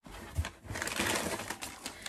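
Rustling and crackling handling noise, as of items being moved about and pulled out of a box, with a low thump about half a second in.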